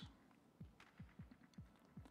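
Near silence: faint background music, with only soft low beats audible.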